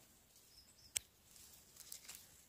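Very quiet handling of yellowfoot mushrooms picked by hand from moss: a single sharp click about halfway through, then faint rustling near the end.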